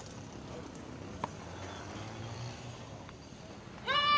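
Outdoor background ambience: a steady low noise bed with a few faint clicks and knocks, one sharper about a second in. A sustained pitched note, sung or played, starts just at the end.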